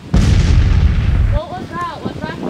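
A loud bomb explosion sound effect breaks out suddenly and stops abruptly after about a second. A voice cries out just after it.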